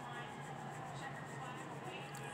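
Faint television broadcast sound of the race coverage heard through a TV speaker in a small room: a low steady hum with indistinct background murmur.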